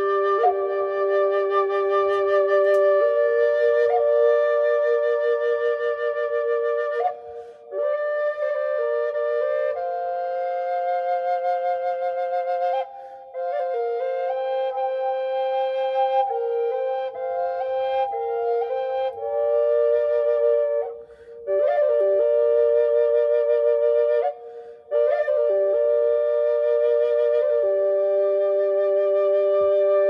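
A six-hole harmony drone flute of reclaimed western cedar, tuned to G and played through effects, sounding two notes at once: a melody over a second voice. It is played in phrases, with short breaks for breath about five times.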